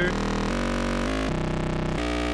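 Eurorack synthesizer tone from a WORNG ACRONYM oscillator, a harmonically rich waveform spread into stereo by a MidSide+ whose width is modulated at audio rate by the ACRONYM's own sine. It holds steady notes that step abruptly to a new pitch about every half second.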